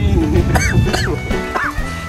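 Three short, high whimpering yelps like a puppy's, a comic sound effect over steady background music.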